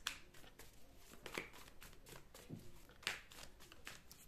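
A deck of tarot cards shuffled by hand: soft, quiet card clicks and slides, with a few sharper snaps about a second in and again about three seconds in.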